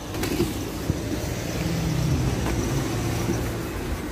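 A car engine running, a low steady hum that swells and then eases off.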